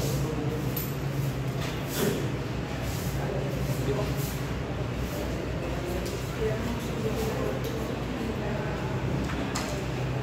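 Market hall ambience: a steady low hum under background voices, with a few sharp clacks or knocks.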